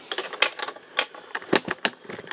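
Chrome-plated plastic toy robot parts clicking and tapping against each other and the tabletop as they are handled: about half a dozen sharp clicks, three of them close together after about a second and a half.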